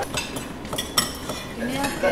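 Cutlery clinking against plates and bowls while people eat: a run of light, irregular clicks, the sharpest about a second in, with faint voices in the background.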